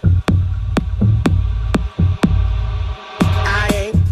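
Electronic dance music from a DJ set: a kick drum about twice a second over a heavy bass line. The bass drops out for a moment about three seconds in, then comes back.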